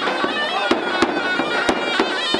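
Zurna, a loud double-reed shawm, playing a continuous traditional melody over a large double-headed bass drum beaten with a stick, its strokes coming sharp and loud about four times in two seconds.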